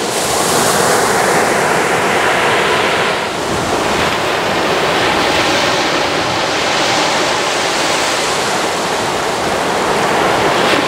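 Small ocean waves breaking and washing up the sand in a steady surf hiss that swells near the start and eases briefly about three seconds in.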